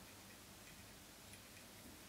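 Near silence: room tone with a few faint, scattered ticks.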